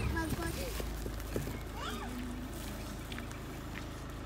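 Faint voices of people talking a little way off, over a low steady rumble.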